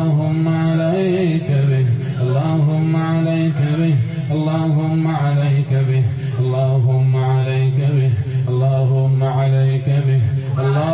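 A man chanting a religious recitation in long, drawn-out held notes, phrase after phrase, with short breaks between them.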